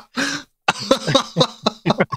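A man clears his throat, followed by laughter in short voiced bursts.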